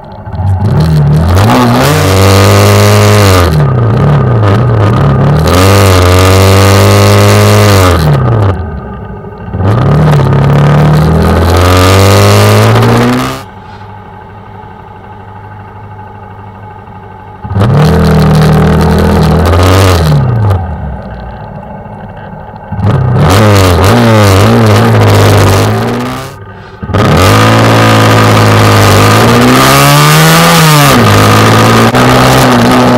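Honda CBR125's single-cylinder four-stroke engine accelerating through the gears, its pitch climbing and dropping back at each shift, over a rush of wind. Near the middle it drops to a few seconds of quiet idle before pulling away again.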